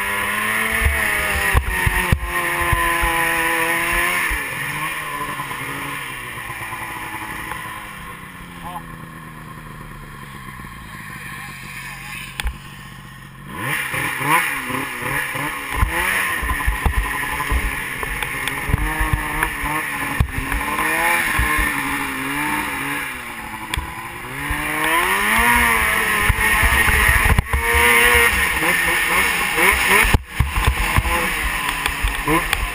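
Snowmobile's two-stroke engine running and revving up and down under changing throttle. It eases to a lower, quieter note for several seconds in the middle, then picks up sharply again about halfway through and keeps rising and falling.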